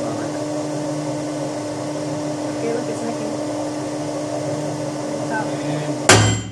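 Tinius Olsen universal testing machine running steadily as it pulls a steel coupon in tension: a constant hum with one steady mid-pitched tone over a low drone.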